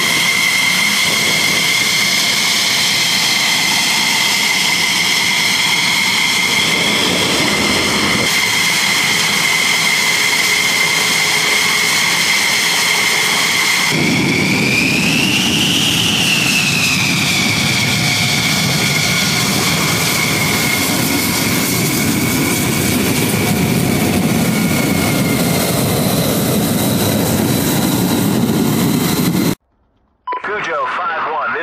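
Fighter jet engine whine on the ramp: a steady high whine from an F-16 running on the ground, then a jet whine that rises and falls in pitch. The sound cuts off suddenly near the end.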